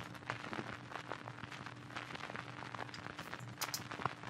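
Vinyl record crackle from a static sample: a dense run of irregular clicks and pops, all over the place in pitch, over a faint hiss and a steady low hum.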